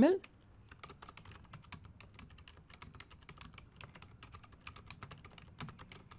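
Typing on a computer keyboard: a quick, irregular run of faint keystrokes.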